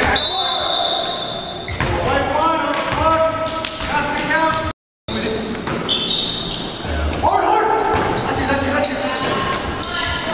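Live game sound of a basketball bouncing on a hardwood gym floor, with players' voices calling out in the echoing hall. About halfway through, the sound drops out completely for half a second at an edit.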